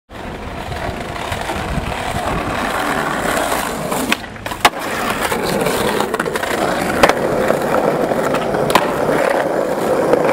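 Skateboard wheels rolling over stone paving slabs, a steady rough rumble, broken a few times by sharp clacks of the board hitting the ground.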